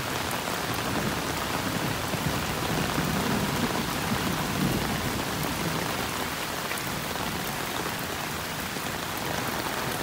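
Heavy rain falling steadily on a road and on runoff water flowing across it. A low rumble swells in the middle and then fades.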